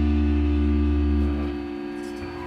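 Electric guitar and bass guitar ringing out on a final held chord with a deep, steady bass note, dying away about one and a half seconds in.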